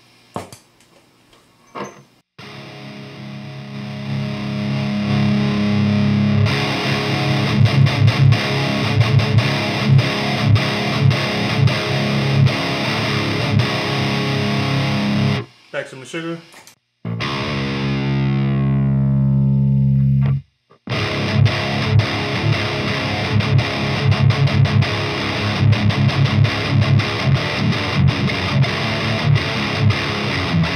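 Skervesen Shoggoth seven-string electric guitar with Bare Knuckle Warpig pickups, played through a high-gain Fortin valve amp head and 4x12 cabinet with heavy distortion: tight, rhythmic palm-muted chugging riffs. About halfway through, the chugging breaks for a held chord that slides down in pitch and cuts off suddenly, and then the chugging resumes.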